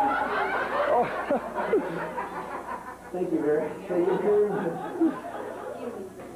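Voices talking, with chuckling and laughter mixed in.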